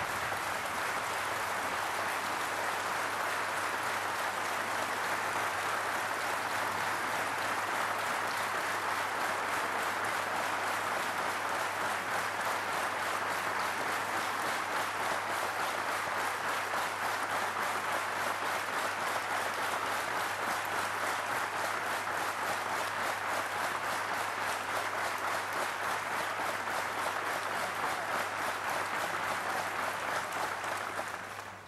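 A large assembly of parliamentarians applauding in a long standing ovation: dense, steady clapping held at an even level throughout.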